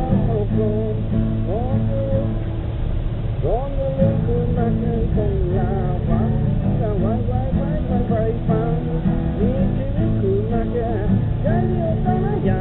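A man singing along to his own strummed acoustic guitar, the voice wavering and gliding in pitch over steady chords.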